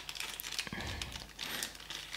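Plastic packaging crinkling irregularly as it is handled, the next blind-box figure being got out of its wrapping.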